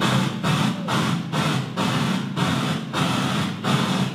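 PA sound system glitching: loud static hiss through the speakers, pulsing about twice a second, which cuts off suddenly near the end. It comes from the microphone having been switched off, which the crew blames for the trouble.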